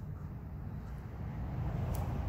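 Low rumbling outdoor background noise that swells slightly in the second half, with one short click just before the end.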